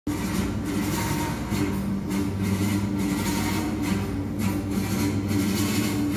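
Background music with low, steady droning notes.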